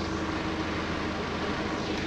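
Steady engine hum and road noise heard inside a motorhome's cab as it creeps forward slowly.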